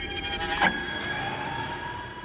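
Horror-trailer sound design: an eerie, sustained drone of steady high tones over a low rumble, with a brief sharp sound about two-thirds of a second in and a tone slowly rising in pitch through the second half.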